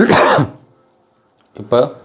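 A man clears his throat once, loud and short, then a brief vocal sound follows near the end.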